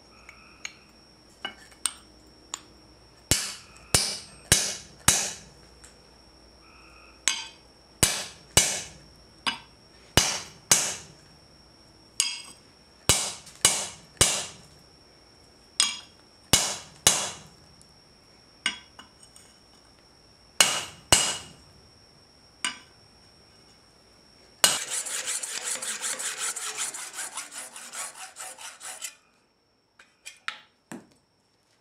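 Hand hammer striking a steel punch into a brass bar on an anvil: sharp ringing blows, often two or three in quick succession with pauses between. Near the end a saw cuts the brass with a steady rasping for about four seconds.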